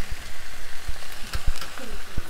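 Saltfish (salted cod) with onion, tomato and scallion sizzling in hot vegetable oil in a pan, a steady hiss, with a few light knocks about a second in.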